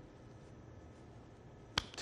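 Near-silent pause with faint room hiss, then a single short, sharp click near the end.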